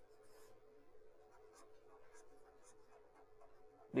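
Faint scratching strokes of a pen writing on paper, short and irregular, over a steady faint hum.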